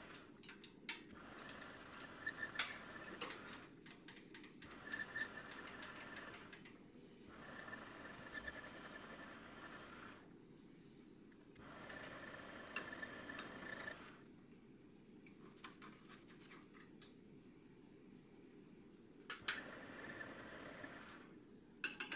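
Mini lathe running faintly in several short spells, a thin steady whine with a hiss as emery cloth and sandpaper are held against the spinning steel shaft to sand it down to an even 8 mm. Short clicks and taps come in the pauses between spells.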